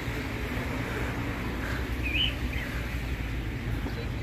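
Steady low outdoor city rumble, with one short bird chirp about two seconds in.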